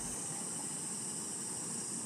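Steady, high-pitched buzz of an insect chorus in a summer forest, over a faint hiss.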